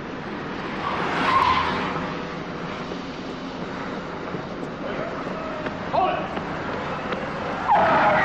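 Cars in street traffic, one coming past with a swell of tire and engine noise, and short tire squeals about six seconds in and again near the end.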